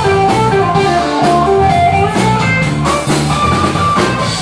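Live rock band playing: electric guitar over bass and drum kit, with a sustained melodic line carrying the tune.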